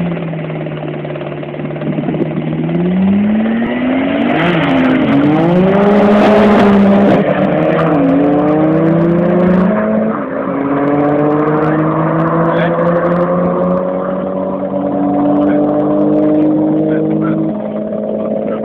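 A Toyota Celica GT-4 ST205 with its turbocharged four-cylinder and a Nissan Skyline R34 GT-R with its twin-turbo straight-six race from a standing start. Their engines are held at steady revs for about two seconds, then climb and drop in pitch through several gear changes over the next eight seconds. Both then run on at high revs down the strip, growing a little fainter near the end.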